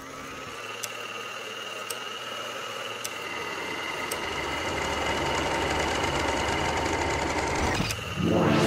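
Electronic intro sound design: a noisy drone with held high tones, slowly swelling in level, with faint ticks about once a second. It cuts off just before the end.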